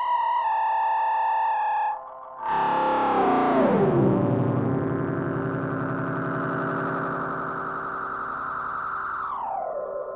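Electronic soundscape music: a sustained pitched tone slowly sliding down in pitch, breaking off about two seconds in, then a loud burst that slides down into a steady low drone, which glides lower again near the end.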